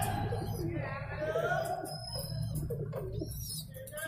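Pigeons cooing in a loft, with other birds chirping.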